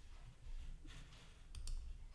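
Two faint, sharp computer mouse clicks close together about a second and a half in, over a low rumble.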